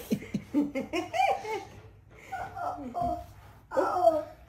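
A toddler laughing in short, high, breathy bursts, with brief vocal sounds between.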